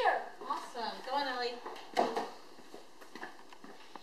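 A child's high voice through the first second and a half, then a single sharp knock, then quiet room tone with a few faint ticks.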